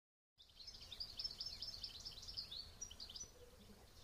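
Small songbirds chirping and twittering in quick, high calls. The calls begin about half a second in and thin out near the end.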